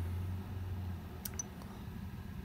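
Quiet room with a low hum that fades about a second in, then a couple of faint clicks from a smartphone being handled and tapped.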